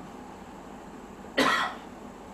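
A person coughing once, a single short cough about one and a half seconds in, over a steady low hiss.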